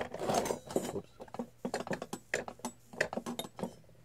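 Handling noise close to the microphone: a quick run of light clicks, knocks and small clinks as the camera is bumped and set back up beside the brass fan parts.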